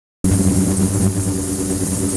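Water-filled stainless-steel ultrasonic cleaning tank running with its liquid-circulation pump: a steady low hum with a thin, high steady whine above it.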